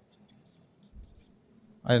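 Faint short strokes of a marker pen writing on a whiteboard, with a soft low thump about a second in.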